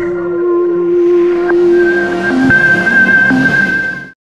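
End-screen outro music: held electronic tones with a hissing whoosh that swells from about a second in, and a few sharp clicks.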